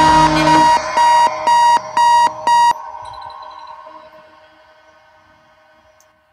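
Hardware techno track playing out: a repeating beeping synth stab, about two a second, over the last of the groove. It stops about three seconds in and the remaining tones ring on and fade away.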